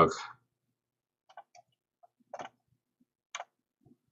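A few faint, scattered clicks from a computer mouse as the chat is clicked and scrolled through.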